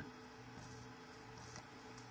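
Near silence: a faint steady low hum from the powered-on Creality CR-10S 3D printer, with a faint rustle of the levelling paper about halfway through.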